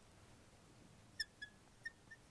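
Faint squeaks of a marker pen writing on a glass lightboard: three short squeaks in the second half, otherwise near silence.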